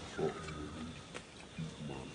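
Long-tailed macaque calls: a thin, high squeal falling in pitch at the start, and short low grunts, one just after the start and another near the end, with a sharp click in between.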